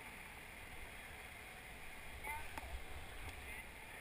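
River current running over shallow rapids, a steady rush and gurgle of water around the boat, with a faint voice heard briefly about two seconds in.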